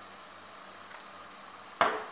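Quiet kitchen room tone with a faint low hum, then a single sharp knock near the end, like a hard object set down on a counter.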